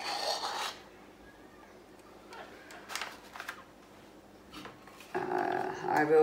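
Handling noises as a plastic flip cup is lifted off a freshly poured canvas and put aside: a short scuff at the start, a few faint scrapes in the middle, and a louder rustling clatter near the end.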